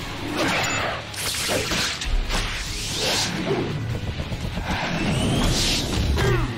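Cartoon fight sound effects: several fast whooshes of swinging and leaping, with a thud about two seconds in, over background music.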